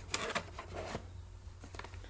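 Snack pouches being handled and pulled out of a cardboard box: a few short crinkles and rubs in the first second, then softer rustling.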